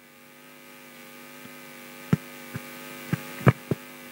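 Steady electrical hum from a public-address system with a live microphone, slowly growing louder. Several short, sharp knocks come in the second half.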